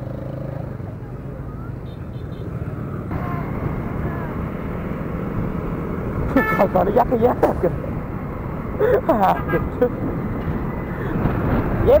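Riding a motorbike along a busy highway: steady engine, tyre and wind noise that grows slowly louder, with other traffic around and brief voices.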